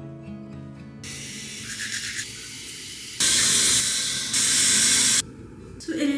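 Aerosol spray can hissing in two long bursts, starting about three seconds in, after a short musical chord.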